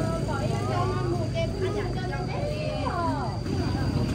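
Several people talking, over a steady low mechanical drone like a running engine.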